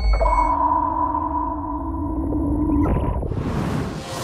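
TEDx closing ident's sound design: two steady electronic tones, one low and one higher, held for nearly three seconds, then a whoosh near the end as the logo comes in.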